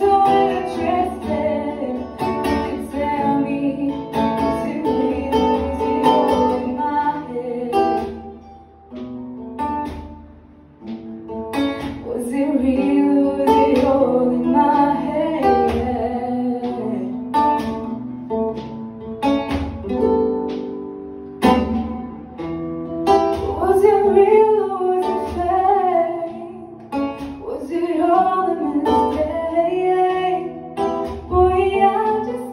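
A young woman singing a soul cover into a handheld microphone, accompanied by acoustic guitar, with a brief lull about nine to eleven seconds in.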